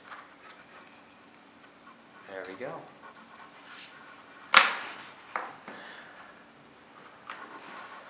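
Low steady hum of a running desktop PC. There is a brief murmured vocal sound about two and a half seconds in, then a sharp click about halfway through, the loudest sound, followed a second later by a smaller click.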